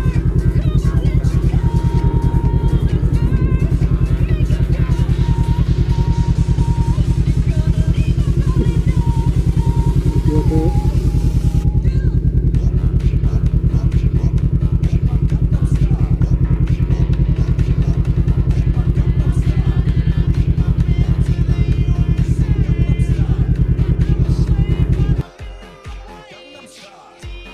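Motorcycle engine idling loudly with a fast, even pulse, stopping abruptly about a second before the end. Music plays faintly underneath.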